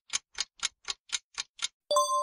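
Ticking-clock countdown sound effect, an even tick about four times a second, counting down the time to answer. Just before the end a bright ringing tone sounds.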